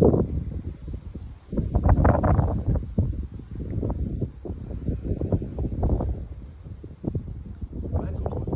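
Wind buffeting the microphone: an uneven low rumble that surges and fades, loudest about two seconds in.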